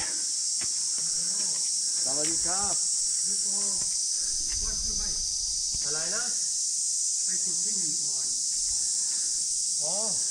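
Steady high-pitched insect drone, with quiet voices talking now and then beneath it.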